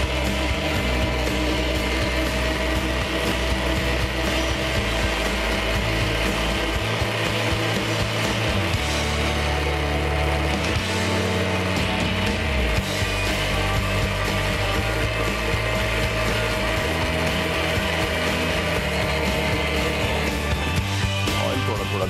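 Electric countertop blender motor running steadily, blending egg, vinegar and sugar into mayonnaise while oil is poured in through the open lid. Its low note shifts now and then as the mixture thickens.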